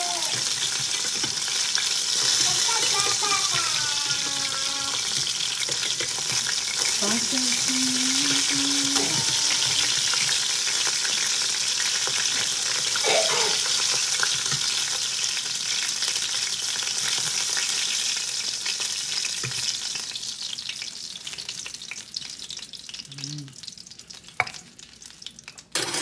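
Lumpia (Filipino spring rolls) frying in shallow oil in a stainless steel pan, a steady sizzle, with metal tongs turning the rolls and lifting them out. The sizzle fades over the last few seconds as the pan empties, and there is a single sharp click near the end.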